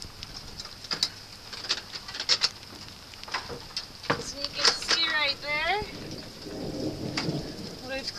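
Steady rain hiss with many scattered sharp taps and knocks, including plastic clunks from handling the housing of a stormwater autosampler as it is opened to reach its bottle carousel. A short soft voice comes in about five seconds in, followed by a rustle.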